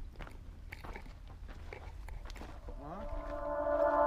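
Footsteps crunching on gravel and dry dirt, with a low wind rumble on the microphone and a sharp click at the very start. Near the end, music fades in with rising tones that settle into steady sustained chords.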